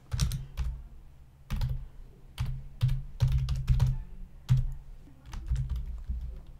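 Typing on a computer keyboard: a run of irregular keystrokes, some in quick clusters, with short gaps between them.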